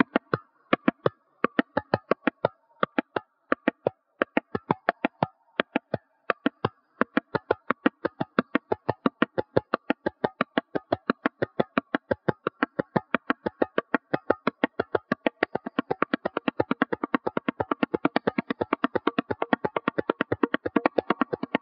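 Solo tabla, both the treble dayan and the bass bayan, played hand-struck: at first phrases of quick strokes broken by short pauses, then an unbroken, ever-denser stream of fast strokes that speeds up toward the end.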